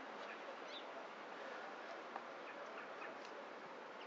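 Faint outdoor ambience: the steady hiss of a running stream, with a few faint bird chirps and a soft tick about two seconds in.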